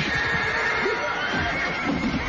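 A horse whinnying in one long, high, wavering call over background music.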